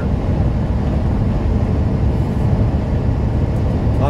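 Steady low rumble inside the cab of a semi-truck cruising at highway speed: engine drone and road noise.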